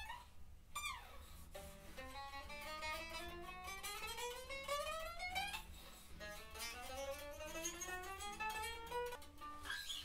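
Vintage V52 Icon Telecaster-style electric guitar played clean, with notes slid along the neck: a short slide down about a second in, then two long slow slides climbing in pitch over several seconds each, to show it plays all the way up and down the fretboard with no dead spots.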